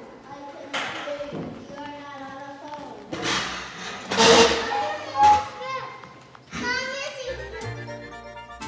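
Children's voices and chatter, with a loud noisy burst a little after the middle. Background music comes in near the end.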